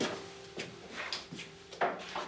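Footsteps on a wooden floor: about five firm steps at walking pace.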